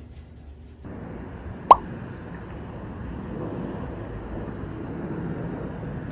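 A single short, bright pop about two seconds in, over a steady background hiss that comes in about a second in.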